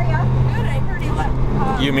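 A steady, low engine drone in the background, one unchanging pitch, under faint voices; it fades a little after about a second and a half.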